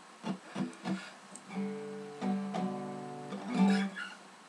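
Acoustic guitar: three short plucks in the first second, then chords strummed and left ringing, the loudest strum just before the end.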